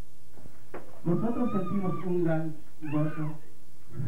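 A man's voice over a microphone, drawn-out and hard to make out, after a single click under a second in.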